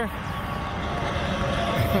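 Steady outdoor background noise with no distinct event; the man's voice starts again near the end.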